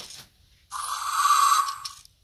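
Fingerlings Untamed Raptor animatronic toy dinosaur playing a rough dinosaur growl through its small built-in speaker, lasting about a second from just before the middle.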